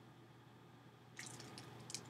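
Faint crinkling of the clear plastic bag around a honeycomb cat litter mat as it is handled: a short cluster of crackles starting a little past halfway, the sharpest near the end.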